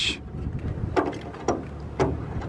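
A plastic fuel sampler cup is pushed against an aircraft wing's fuel sump drain valve, giving two short clicks about a second and a second and a half in, over a steady low rumble.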